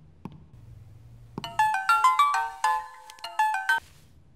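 Mobile phone ringtone playing a quick melody of bright notes, starting about a second and a half in and cutting off just before the end. A soft knock comes just after the start.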